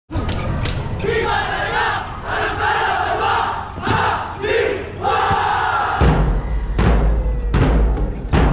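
A group of voices shouting and chanting together, then about six seconds in a festival drum ensemble comes in with loud, heavy drum beats.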